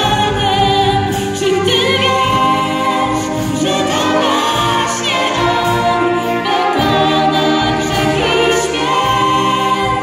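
A wind band of flutes, clarinets and brass plays a Christmas carol, accompanying singers whose held notes carry a marked vibrato, heard inside a church.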